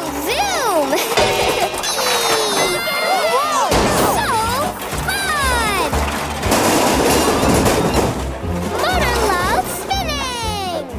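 Cartoon soundtrack: music with sliding, whistle-like sound effects and non-word vocal sounds, and a burst of crash-like noise about six and a half to eight seconds in.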